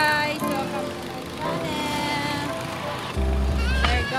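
Background music playing with a woman's voice over it. A deep low rumble comes in for about the last second.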